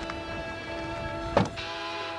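A car's hatchback tailgate slammed shut once, a sharp thump about one and a half seconds in, over background music with held notes.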